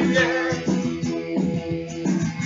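Electric guitar strummed, its chords ringing on, in an instrumental gap of a song.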